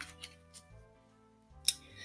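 A picture-book page being turned, with one short sharp paper rustle near the end, over faint background music.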